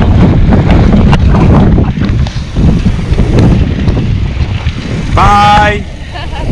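Heavy wind buffeting on the microphone of a camera moving along with a bicycle ride, with scattered light knocks and rattles. Near the end a voice briefly speaks.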